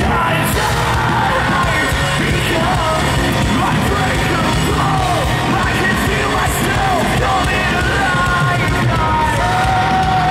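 Hard rock band playing live, with drums, electric guitar and bass at full volume and a vocalist singing over them. The full band comes in right at the start.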